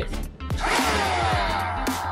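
Electronic background music with a steady bass and beat, and a falling synth sweep that glides down in pitch for about a second and a half.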